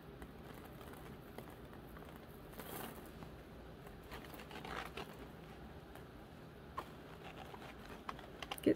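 Faint handling noise: soft rustles a little after two and four seconds in, and a single small click near the end, as hands pick glass crystal beads and rose quartz chips from a palm and thread them onto fine wire.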